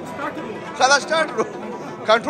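Speech only: men chatting at a dinner table, one voice loudest about a second in, over low room babble.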